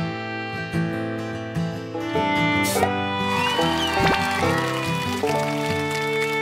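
Instrumental background music with held notes that change about every half second, and a sliding note a little past the middle.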